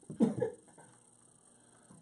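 A short, cough-like laugh, one burst of under half a second just after the start, then only quiet room tone.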